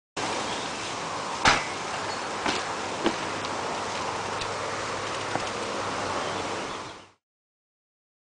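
Steady outdoor background noise with a few sharp knocks and clacks from a BMX bike on concrete, the loudest about one and a half seconds in. The sound cuts off abruptly near the end.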